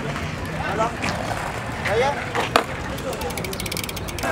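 Indistinct distant voices over a steady outdoor background noise, with two sharp knocks, about a second in and again past the halfway point.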